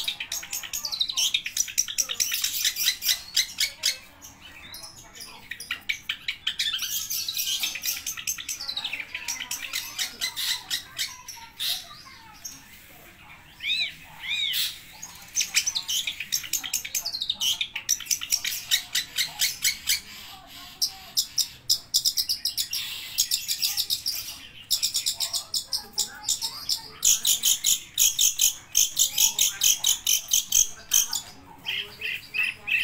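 Caged long-tailed shrike (cendet) singing its full mimicry-laden song: long runs of fast, high, repeated chattering notes, broken by two short lulls.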